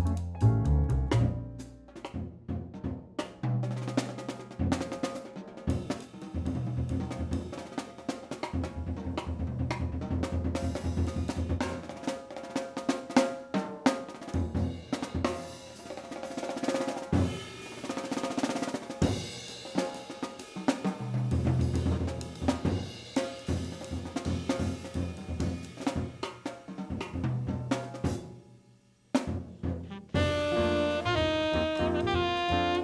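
Jazz drum solo on a drum kit: snare, bass drum, hi-hat and cymbals played in dense, sharp strokes, with a short break near the end.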